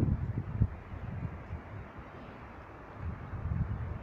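Wind buffeting the microphone: an uneven low rumble in gusts, strongest in the first second, easing in the middle and rising again near the end.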